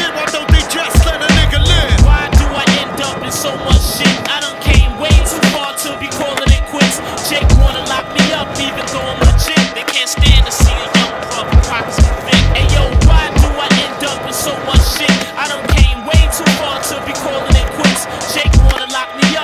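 Skateboard wheels rolling on a smooth concrete floor, with sharp clacks of tail pops and board landings, over a hip-hop beat with a regular kick drum.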